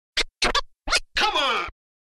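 Scratchy logo-sting sound effects: three quick scratch swipes, then a longer scratch whose pitch falls, cutting off abruptly just before the end.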